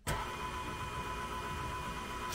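KitchenAid stand mixer switched on, its motor starting suddenly and then running at a steady pitch as the dough hook kneads sourdough pretzel dough.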